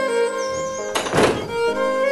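A house door shutting with a single thunk about a second in, over violin-led folk music.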